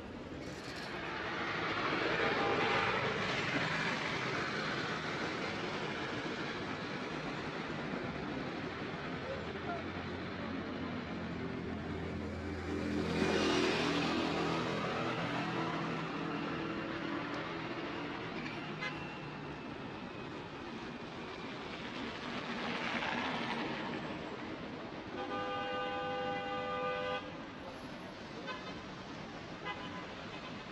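Outdoor city traffic noise with vehicles passing, one engine loudest about 13 seconds in. Near the end a car horn sounds for about a second and a half in short blasts.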